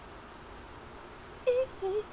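Faint steady background hiss, then near the end two short hummed voice sounds, each a brief rising note.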